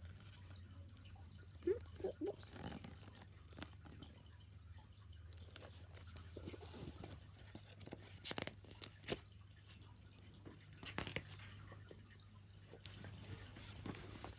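Pages of a hardback book being flipped and handled: scattered soft paper rustles and small clicks over a low steady hum, with a couple of brief faint vocal sounds about two seconds in.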